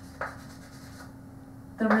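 Chalk writing on a blackboard: a few short strokes in the first second, then fading. A woman's voice starts near the end.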